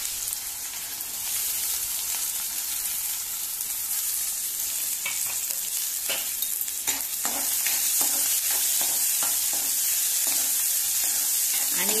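Chopped onions sizzling as they fry in hot oil in a kadai, a steady high hiss. From about five seconds in, short scrapes and taps of a spoon stirring them against the pan.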